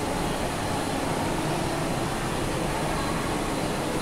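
Steady background noise: an even rushing hiss with no distinct events, like a running fan or room machinery.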